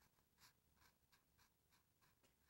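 Near silence, broken only by a few faint scratchy clicks of a styrofoam cup and straws being handled, the clearest about half a second in.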